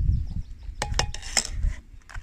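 Metal spoon clicking and scraping against a plastic food tub, a few sharp clicks in the second half.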